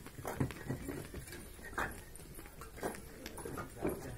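Fired clay bricks clacking against one another as they are handled and stacked by hand: a handful of sharp knocks at irregular intervals.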